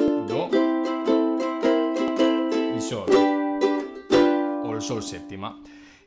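Ukulele strummed in a blues rhythm, the closing bars of a 12-bar blues in C. About four seconds in comes a final chord, left to ring and fading out.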